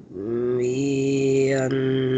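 A man's voice chanting Quranic Arabic recitation, holding one long drawn-out vowel at a steady pitch, with the vowel changing about three quarters of the way through.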